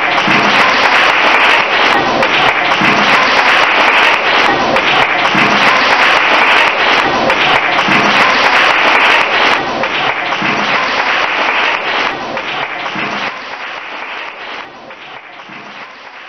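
Audience applauding: a dense clatter of many hands clapping, steady at first and then fading out over the last few seconds.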